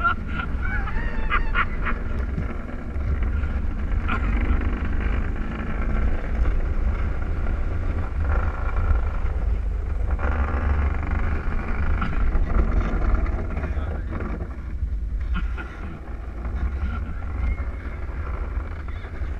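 Luge cart rolling fast down a concrete track: a steady rumble of its wheels on the concrete and wind buffeting the microphone, with a few short high-pitched sounds in the first two seconds and a brief lull about three quarters of the way through.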